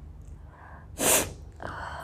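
A woman sneezes once, loudly and suddenly, about a second in, set off by sniffing ground black pepper. A short catching breath comes just before it, and a breathy exhale follows.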